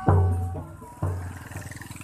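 Barongan procession music: two deep, ringing percussion strikes about a second apart as the melody before them fades.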